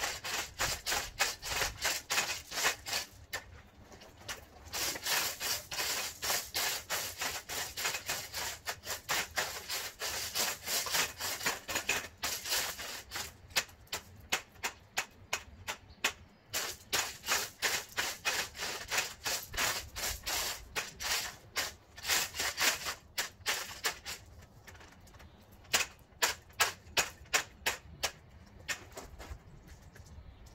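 Long-handled rake scraping through wet, root-bound gravel in quick repeated strokes, about three a second, with a couple of brief pauses.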